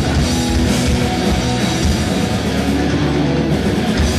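Live rock band playing loud, with electric guitars and a drum kit.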